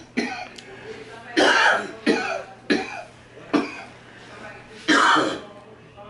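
A man coughing in a fit, about six harsh coughs with short gaps between them.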